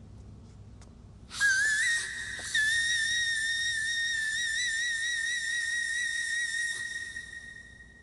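A woman singing a whistle-register note. After about a second of quiet, a very high tone slides up and breaks off briefly, then is held for about four seconds with a wavering vibrato before fading out near the end.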